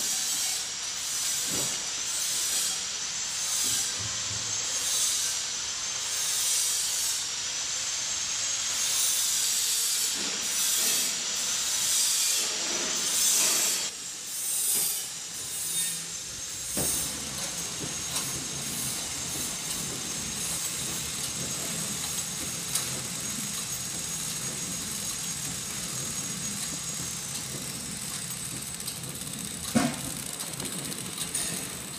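Horizontal flow-wrap packing machine running: a steady mechanical hiss and whir with a wavering high whine, and a regular pulse through the first half. After about 14 s the sound settles into a steadier hum with a constant high tone.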